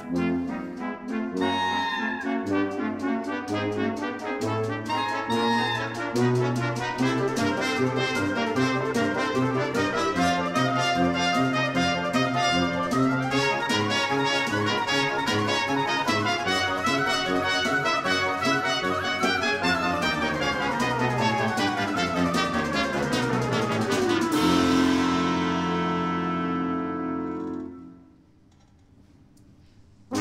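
Symphony orchestra playing a fast, brass-led passage over rapid, evenly repeated percussion strokes. Near the end a long falling run leads into a held brass chord that cuts off just before the close.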